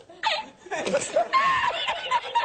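A man laughing hard in a string of high-pitched bursts: the 'El Risitas' laughing-meme clip edited in as a joke.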